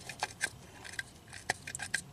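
A few light, sharp clicks and faint scrapes from gloved fingers handling the worn plastic distributor cap, with a cluster of small clicks in the second half.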